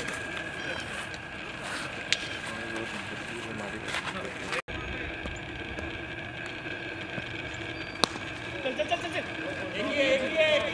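A single sharp crack of a cricket bat striking the ball about eight seconds in, over open-air ambience. Men's voices call out just after it.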